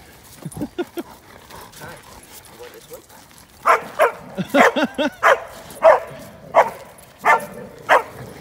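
A dog barking repeatedly in play while dogs tussle, starting about three and a half seconds in, at roughly two barks a second.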